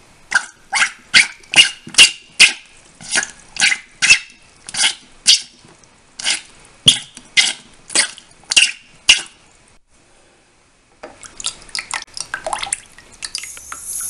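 Short, sharp puffs of breath blown through a drinking straw into the ink holes of a printhead held under water, about two a second for some nine seconds, to flush out clogged ink. After a short pause, water splashes as the printhead is moved about and lifted from the plate.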